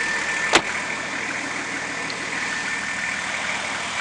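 Nissan Patrol Y61's RD28T 2.8-litre turbo-diesel straight-six idling steadily, with a faint steady high whine. A single sharp knock about half a second in.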